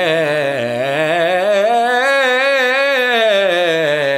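Male voice singing a vocal scale in full, resonant bel canto opera style with wide vibrato: one unbroken line that climbs in pitch for about two and a half seconds, then comes back down.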